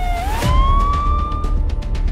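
A police-style siren sound effect layered over title music with a steady beat. The siren tone dips briefly, then sweeps up and holds for about a second before cutting off.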